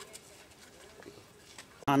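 Quiet background with only faint, indistinct sounds, then a man's voice cuts in abruptly near the end.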